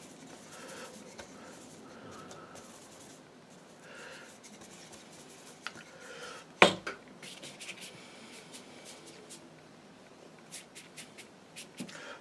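Faint rubbing and scratching of a watercolour brush working paint, with one sharp tap about two-thirds of the way through and a few light clicks near the end.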